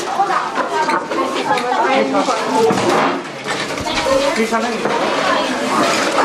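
Speech: people talking, voices running through the whole stretch.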